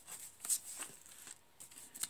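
Paper receipt being handled, rustling in short strokes with a sharper crinkle about half a second in.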